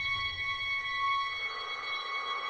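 A steady electronic drone of several high tones held together, over a low rumble that dies away during the first second and a half.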